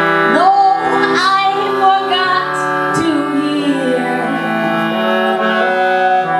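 Piano accordion holding sustained chords, with a woman's voice singing gliding phrases over it in the first half.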